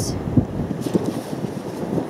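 Wind buffeting the microphone: an uneven low rumble with a few short thumps, the strongest about half a second in.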